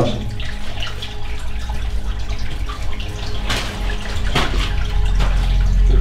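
Steady rushing of running water, with two sharp knocks of footsteps on loose rock rubble, about three and a half and four and a half seconds in.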